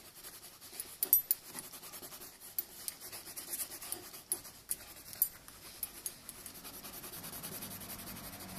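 A colouring stick rubbing and scratching across paper as a drawing is shaded in, a dry rasp broken by irregular sharp ticks from the strokes.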